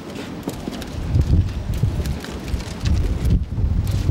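Wind buffeting the microphone, with irregular low rumbling gusts from about a second in, over scattered light clicks.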